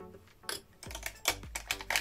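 A handful of sharp light clicks and taps from makeup brushes and a plastic eyeshadow palette being handled, with music in the background.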